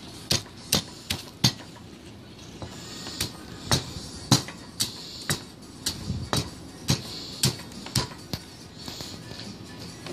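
Stone mortar and pestle crushing cookies into crumbs: the pestle strikes the mortar in irregular sharp knocks, about two a second.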